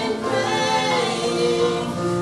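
A woman and a man singing a gospel song together at one microphone, with long held notes.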